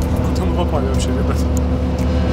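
Steady engine and road hum inside a moving coach, with a passenger's brief indistinct voice a little before one second in.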